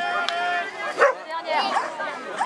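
Border collie giving short, high barks and yips while running the weave poles, with a person's voice alongside.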